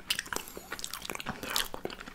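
Close-miked chewing of gingerbread, a run of small crunchy, crackly clicks.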